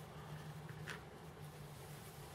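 One faint click of a small brass part being set down on a cutting mat, about a second in, over a steady low hum.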